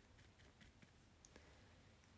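Near silence with a few faint, scattered clicks and taps from a cushion foundation compact and its puff being handled.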